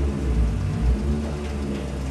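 Suzuki Carry kei pickup's small engine running at low revs with a steady low rumble as the truck is manoeuvred slowly into the workshop.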